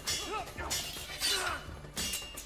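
Fight-scene sound effects from a TV action drama: several sharp hits and glass shattering, over a dramatic music score.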